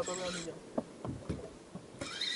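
A few faint, scattered clicks and knocks from handling a fishing rod and spinning reel while reeling in a hooked fish, after a brief voice at the very start.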